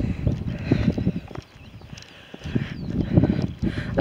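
Footsteps of a person walking on a tarmac country road, an irregular run of short knocks over a low rumble, dropping away for about a second in the middle.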